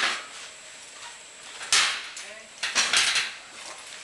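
Metal-on-metal clanks as steel tools and parts are handled at a motorcycle frame's steering head: one sharp clank about two seconds in, followed by a short run of clattering knocks.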